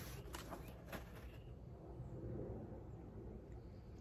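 Faint handling of a paint-covered porcelain figurine in a cardboard box: a few light clicks in the first second and a half, then only a steady low outdoor background.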